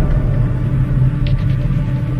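Deep, sustained rumbling drone of a logo-intro sound effect, steady and held throughout, ringing on from a drum-like hit just before.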